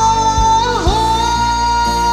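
Karaoke singing: a man holds one long high note over a backing track of guitar and a steady drum beat. Near the start of the second second the note dips and swoops back up, then is held again.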